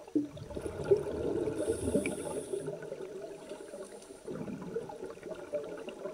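Scuba breathing heard underwater: bubbling, gurgling exhalations from open-circuit regulators, with a short hiss about two seconds in.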